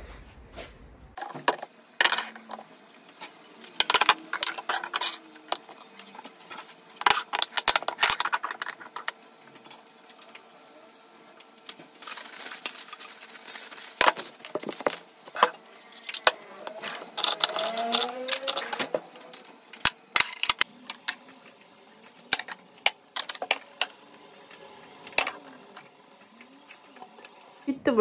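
Irregular clinks and knocks of glass perfume and cosmetic bottles and a metal wire-framed mirror tray being picked up and set down on a hard dressing-table top.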